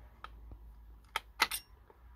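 A few small sharp clicks of a thin hex key against the RC truck's motor pinion set screw as it is fitted into the screw, the loudest two in quick succession about a second and a half in.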